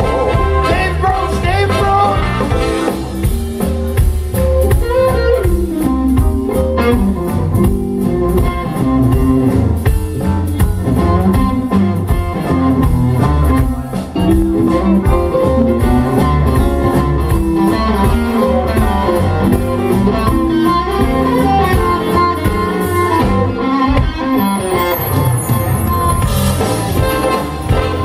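Live blues band playing an instrumental passage: electric guitars, electric bass, keyboard and a drum kit keeping a steady beat.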